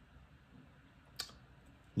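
Quiet room tone broken by a single short, sharp click a little over a second in.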